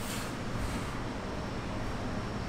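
Steady room noise with a low rumble, and a faint breathy hiss shortly after the start and again about half a second in.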